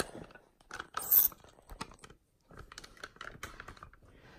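Handling noises: scattered clicks and knocks, with a brief hissing scrape about a second in.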